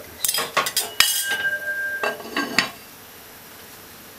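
A metal spoon and pot lid clanking and scraping against a metal cooking pot: a quick run of clanks over the first few seconds, the loudest strike about a second in leaving a ringing tone for about a second.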